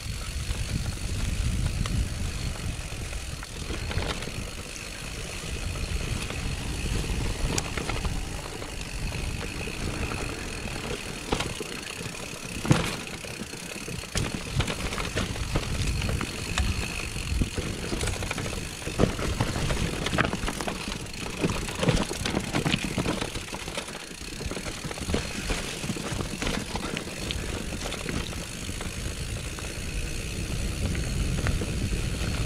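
Mountain bike descending a grassy meadow and dirt woodland singletrack: wind buffets the camera microphone with a low rumble under tyre noise, while the bike rattles and knocks over bumps. One sharp knock near the middle is the loudest.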